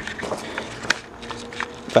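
Rustling handling noise and footsteps, with irregular sharp clicks, the sharpest a little under a second in.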